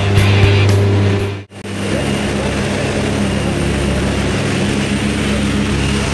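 Jump plane's propeller engine droning steadily, heard from inside the cabin. It cuts off abruptly about a second and a half in, then gives way to loud rushing wind through the open door over the engine noise.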